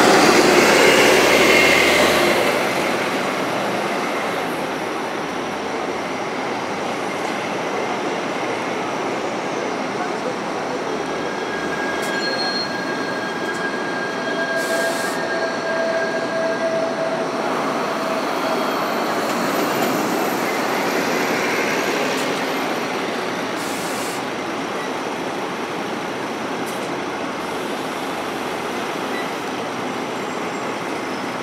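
Busy city-street noise of traffic and rail vehicles, loudest as something passes at the start, with a thin, high wheel squeal from a rail vehicle in the middle.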